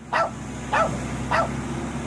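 A dog barking three times, evenly spaced a little over half a second apart, over a low steady hum.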